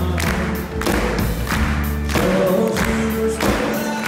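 Live country band playing through a PA with a steady drum beat, guitars and a lead singer, and the audience clapping along in time.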